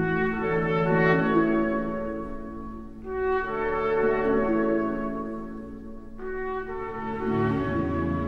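Orchestral film score led by brass, French horn to the ear of the tagger, playing slow sustained phrases that swell and fade, a new phrase entering about three seconds in and another about six seconds in.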